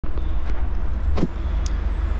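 City street traffic noise: a steady low rumble under a general hiss, with a couple of brief noises around the middle.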